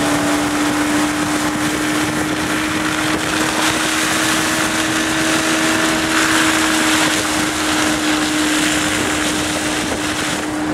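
Motorboat engine running at a steady speed with a constant drone, under a continuous hiss of water spray and wind on the microphone.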